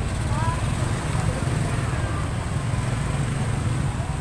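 Steady low rumble of outdoor background noise, with faint distant voices briefly near the start.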